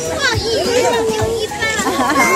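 Several children's and visitors' voices chattering and calling out at once, overlapping, with no single speaker clear.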